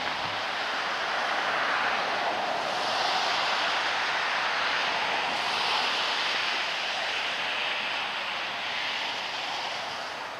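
A steady rushing noise with no distinct tones or knocks. It swells a few seconds in and eases off near the end.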